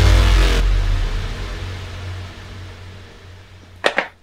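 Dramatic TV music sting: a deep boom with a held chord that cuts off about half a second in, leaving a low rumble that fades away over the next few seconds.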